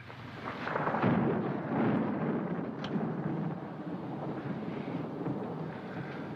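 A low rumbling noise with no pitch in it swells up about a second in and then slowly dies away, with a faint click near the middle.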